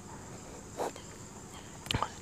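Quiet room tone under a steady, faint high-pitched background trill, with one brief faint pen stroke on paper a little under a second in.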